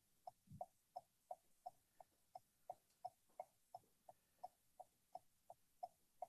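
Faint, rapid beeping: short pips at one steady pitch, evenly spaced at about three a second, with near silence between them.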